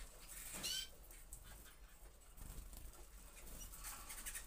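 Gloster canaries in a wire flight cage, mostly quiet: one short rising chirp about half a second in, then only faint rustling from the birds moving about.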